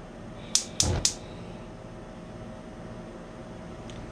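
Gas range burner being turned on: the spark igniter clicks three times about a quarter second apart, with a low thump as the burner catches.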